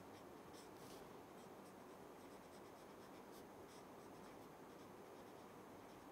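Faint, intermittent scratching of a marker pen writing on paper.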